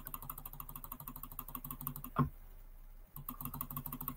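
Computer keyboard key pressed rapidly and repeatedly, clicking several times a second while paging back through presentation slides. There is a brief thump a little after two seconds and a short pause before the clicking resumes.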